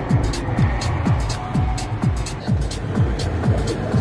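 Electronic house music playing through the car's stereo, with a steady kick drum about twice a second and ticking hi-hats, over the low road noise of the moving car.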